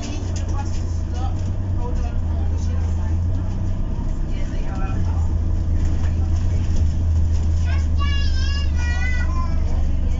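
Cabin sound of an Alexander Dennis Enviro400 MMC double-decker with BAE hybrid drive on the move: a steady low hum from the drivetrain and road under passengers chattering. Near the end a high, wavering voice comes in over it.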